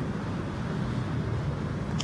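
Steady low background rumble, with one short click right at the end.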